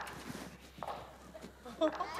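Footsteps of black leather dress shoes on a wooden stage floor, with one short sharp knock a little under a second in.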